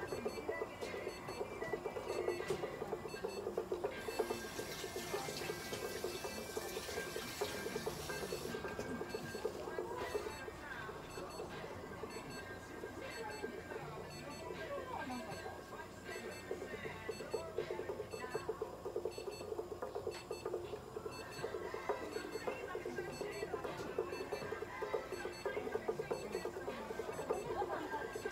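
Steady, rapidly repeating electronic beeping from a Super Lizer light-therapy unit while it is irradiating. About four seconds in, a few seconds of rustling from a handled paper tissue.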